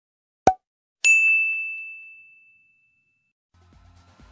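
Intro sound effects: a short pop, then half a second later a single bright ding that rings out and fades over about two seconds. Music begins faintly near the end.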